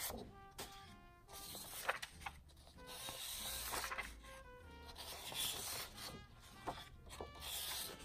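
Sheets of printed paper rustling and sliding against each other as they are shuffled and lifted, in several separate bursts, over faint background music.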